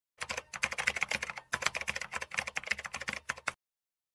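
Computer keyboard typing sound effect: a quick, dense run of key clicks with a brief break about a second and a half in, stopping shortly before the end.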